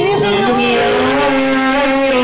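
A girl singing into a handheld microphone, sliding up into one long held note at the start and sustaining it.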